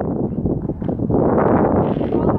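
Wind blowing across the camera's microphone: a loud, uneven rush of low noise.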